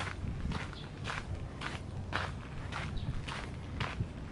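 Footsteps crunching on a gritty dirt path at a steady walking pace, about two steps a second.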